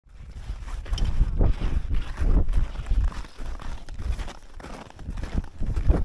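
Crampon footsteps crunching in snow, coming unevenly about once a second, with wind buffeting the microphone in a low rumble.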